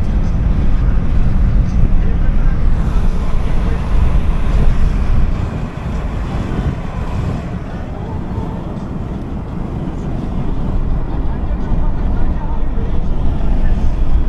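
Steady low road rumble and wind buffeting the microphone from a moving car, loudest in the first five seconds or so, then easing somewhat.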